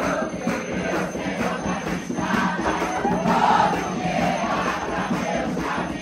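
A congregation singing an Umbanda ponto together, with many hands clapping in rhythm.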